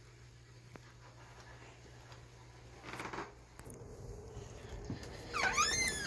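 A steady low hum that stops about halfway through, then near the end a door hinge squeaking briefly as a door swings open, its pitch rising and falling.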